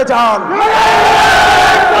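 A man's long, drawn-out slogan shout through a rally's public-address microphones, held on one pitch from about half a second in, with a crowd shouting along underneath.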